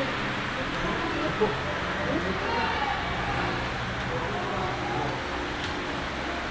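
Indistinct talking, with a word spoken about halfway through, over a steady background din.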